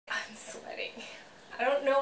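Women's voices: soft, breathy murmuring for about the first second, then a woman starts speaking near the end.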